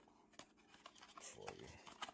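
Faint handling of a cardboard product box: a few light clicks and rustles as its end flap is opened.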